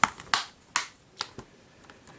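Plastic Blu-ray cases clicking and tapping as they are handled and swapped in the hands: about five short, sharp clicks, the first the loudest.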